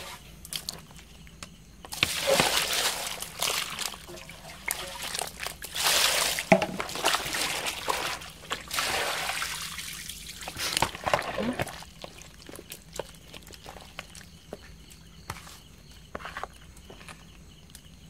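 Water sloshing and pouring out of a plastic basin as freshly caught fish are rinsed, in a few splashing pours from about two seconds in, then quieter after about eleven seconds, with small knocks and trickles.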